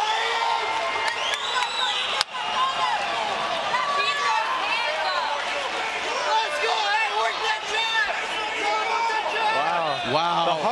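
Boxing arena crowd shouting and cheering after a knockdown, many voices overlapping.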